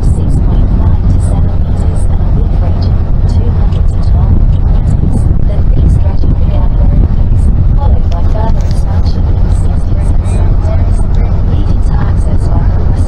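Loud, steady low rumble aboard a moving cruise boat, with passengers' voices faintly behind it.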